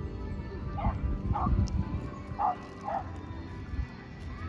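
A small dog barking four short barks in two pairs, over background music with steady held tones.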